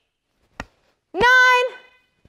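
A single short, sharp knock from a bo staff strike about half a second in, followed by a woman counting "nine" aloud in a drawn-out voice.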